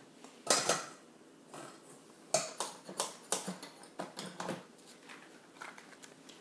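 Soapmaking tools and containers being picked up and set down: a series of knocks and clatters. The loudest comes about half a second in, and several more follow between about two and four and a half seconds.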